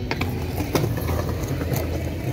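Pigeons pecking and stepping on brick paving: a few sharp taps and clicks, a quick cluster just after the start and single ones in the middle and near the end, over a steady low rumble.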